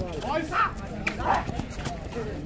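Shouting voices of kabaddi players and onlookers during a raid, loudest about half a second in and again just past the middle, with a few sharp slaps or footfalls on the foam mat.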